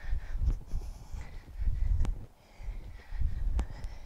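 A woman's heavy breathing in time with two-handed kettlebell swings, one breath burst with each swing about every one and a half seconds, with a few faint clicks.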